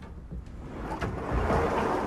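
A wooden wardrobe door being pulled open, a swelling rush of noise that builds through the second half.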